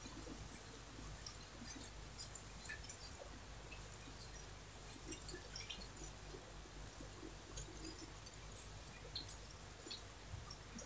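Faint rustling and small ticks of hands handling fabric and a tape measure while measuring and marking, over a low steady hum.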